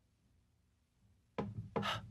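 Near silence, then about one and a half seconds in a sudden rubbing, scraping sound, ending in a louder, hissy rasp.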